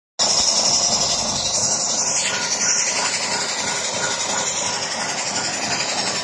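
A truck's air compressor and engine running steadily with a loud, even hiss while a gauge on the air line reads the compressor's output pressure.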